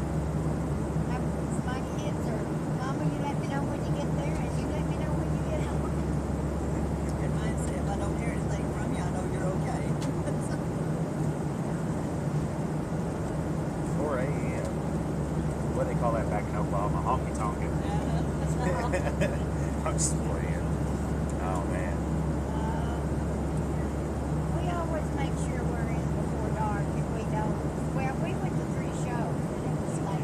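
Steady low drone of an airliner cabin in flight, unchanging throughout. Faint, indistinct voices of nearby passengers murmur over it, clearest from about halfway through.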